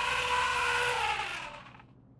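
A whoosh sound effect that swells and bends in pitch, then fades out a little under two seconds in.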